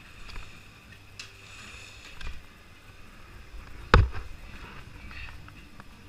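Ski gear being handled, with faint rustling and a few small clicks, and one sharp, loud knock about four seconds in, like a ski or pole striking something hard.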